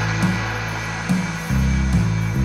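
Electronic music built on sustained synthesizer bass notes with a pulsing rhythm; the bass steps to a lower, louder note about one and a half seconds in.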